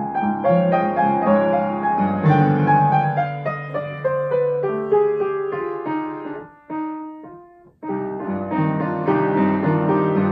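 Baldwin grand piano played solo, a slow piece of held chords and melody. About six and a half seconds in it thins to a few single held notes and nearly dies away, then full chords return about a second later.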